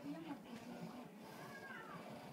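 A small child's short vocal sounds, pitched and voice-like, with a falling glide near the end, over faint store background.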